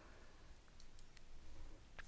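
A few faint computer mouse clicks close together about a second in, over near silence.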